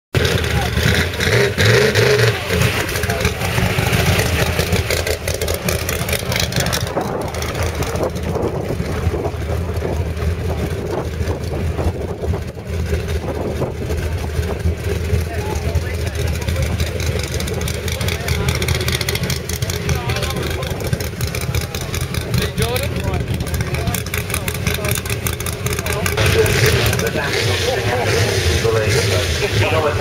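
Baja trophy truck's engine idling with a steady low rumble while the truck rolls slowly, with people's voices over it near the start and end.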